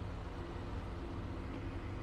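Steady low hum and hiss of room tone, with no distinct events.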